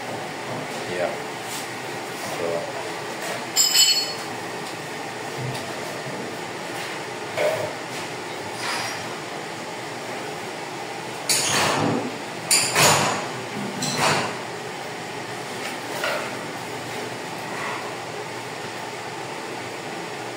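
Scattered knocks and clinks of ceramic tile work, a hand tool chipping at broken tile pieces: one ringing clink about four seconds in, then a cluster of louder knocks a few seconds past the middle.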